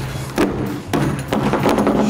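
A few heavy thuds in quick succession.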